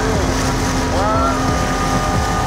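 Steady rumble of a boat motor and wind on the microphone, with faint voices. About a second and a half in, a long steady horn starts: the hooter sounding the end of the heat.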